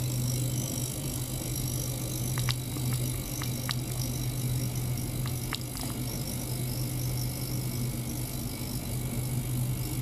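Small ultrasonic cleaner running: a steady low hum with a hiss from the water in its stainless tank, and a few faint sharp ticks in the first half.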